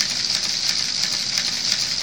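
Steady high-pitched hiss, the recording's background noise, with no distinct sound event.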